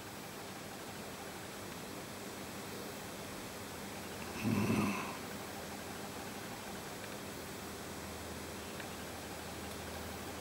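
A short low grunt, about half a second long, roughly midway through, over steady faint background hiss.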